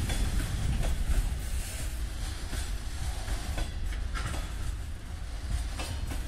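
Freight train of open gondola wagons rolling past on the far track: a steady low rumble with scattered clicks from the wheels over the rails.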